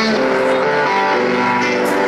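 Live blues-rock band playing, with electric guitars and keyboard holding steady notes.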